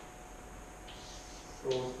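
Chalk scratching briefly on a blackboard about a second in, over faint steady room hum; a man's voice says "So" near the end.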